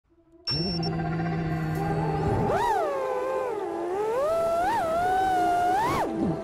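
FPV racing quadcopter's electric motors whining. The pitch holds steady at first, then from about two and a half seconds in it swoops up and down repeatedly as the throttle changes.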